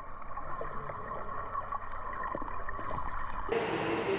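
Muffled underwater sound of a swimmer moving through a pool, with faint gurgling. About three and a half seconds in it cuts abruptly to water splashing and churning at the surface as swimmers move through it.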